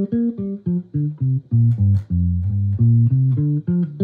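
Electric bass guitar playing the G blues scale one plucked note at a time, about four notes a second, stepping down to its lowest notes around the middle and climbing back up near the end.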